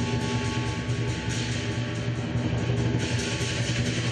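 Lion dance percussion: a large Chinese drum beating rapidly under a steady wash of crashing cymbals and ringing metal, loud and continuous.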